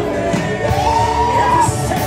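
Live gospel worship music with amplified singing over a drum kit and band. The sung line rises to a long held note about half a second in.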